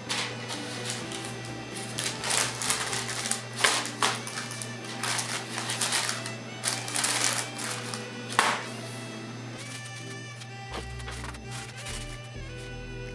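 Sheets of paper rustling and crinkling in irregular bursts as a cheesecake is wrapped and the paper is folded and pressed down into a round paper case, over background music.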